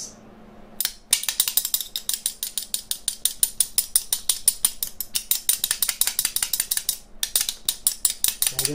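Two metal spoons played as a rhythm instrument, beaten fast and evenly between the knee and the palm of the other hand so they clack on both the down and the up stroke, at about six or seven clacks a second. It starts about a second in and breaks off briefly near the end.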